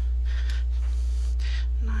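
Steady low electrical hum on the recording, with a couple of soft breaths about half a second in and around one and a half seconds. A spoken word begins at the very end.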